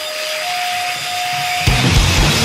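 Powerviolence hardcore recording in a brief break. A single held feedback tone rings over noisy hiss and steps up a little in pitch about half a second in. The drums and distorted band crash back in just before the end.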